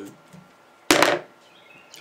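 A wire brush at a fly-tying vise making one short, sharp noise about a second in, louder than the speech around it.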